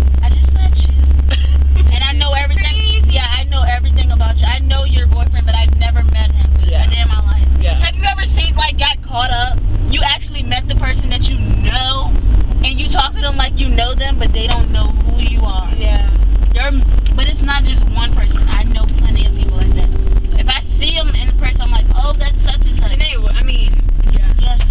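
Car cabin rumble of the engine and road while driving, a loud, steady low drone that changes about nine seconds in. Voices talking over it.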